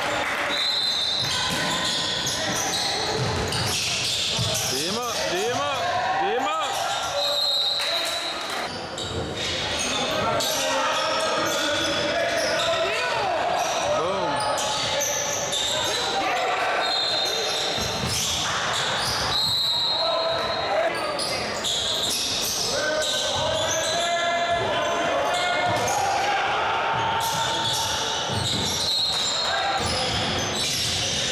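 Basketball game on a hardwood gym floor: the ball bouncing again and again and sneakers squeaking in short high chirps, with echo from the large hall.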